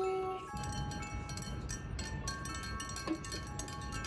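Light background music of bell-like mallet-percussion notes, glockenspiel and chime tones that ring briefly at changing pitches over a soft steady beat.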